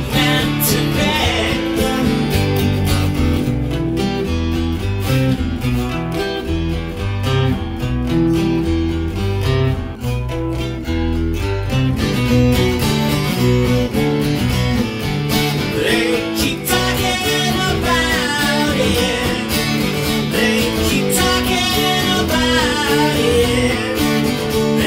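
Acoustic guitar played steadily through an instrumental break, chords changing under a running melody, with a wavering higher melodic line joining in the second half.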